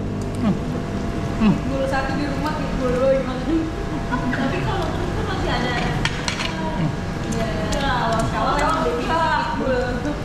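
Food sizzling on a tabletop grill, under indistinct voices and background music.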